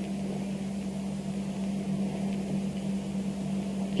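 Steady low electrical hum with a faint even hiss behind it.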